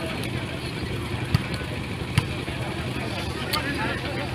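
Volleyball match natural sound: a steady crowd murmur over a low hum, with two sharp smacks of the ball being struck, about a second and a half in and again just after two seconds. A few faint shouts come near the end.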